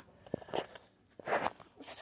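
Light handling noises: a few soft clicks and brief rustles as a plastic action figure is handled.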